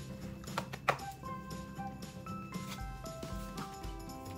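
Soft background music of held notes, with a few clicks and rustles of paper album pages being handled, the sharpest about a second in.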